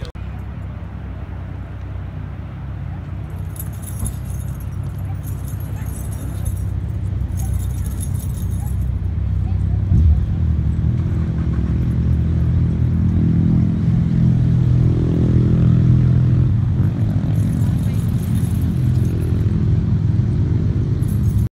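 Motorcycle engines running with a deep rumble that grows steadily louder over the seconds.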